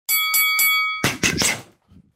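A boxing ring bell struck three times in quick succession, ringing briefly; the ring is cut off after about a second. Three sharp hits follow quickly, punches landing on a heavy bag.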